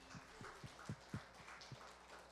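Faint, irregular low thumps and knocks, about seven in two seconds, against near-silent room tone just after the band's music has died away.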